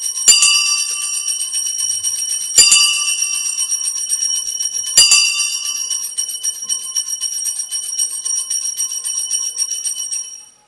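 Sanctus (altar) bells shaken in a rapid, continuous jingling peal, with three stronger accented rings about two and a half seconds apart. The ringing marks the elevation of the chalice just after the consecration at Mass.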